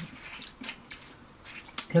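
Faint small clicks and rustles of a small lip-scrub jar and its lid being handled in the fingers.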